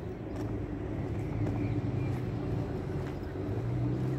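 An engine running with a low, steady hum that grows a little louder about a second in.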